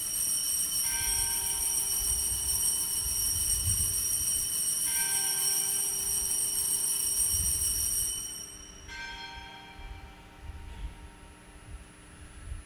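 Altar bells rung at the elevation of the consecrated host: a steady high ringing of small bells for about eight seconds, with a deeper bell struck three times about four seconds apart. The last strike rings on alone after the small bells stop.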